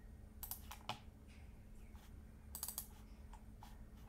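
Faint clicking of a computer keyboard and mouse, in a few short clusters: about half a second in, near one second, and again around two and a half seconds in.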